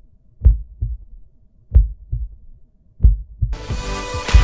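Heartbeat sound effect: a slow, low double thump, lub-dub, about every 1.3 seconds, three beats. Loud music comes in shortly before the end.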